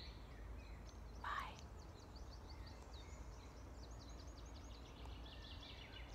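Faint birdsong: a single rising note about a second in, then a fast run of short, high, thin notes that lasts several seconds, over a faint low rumble.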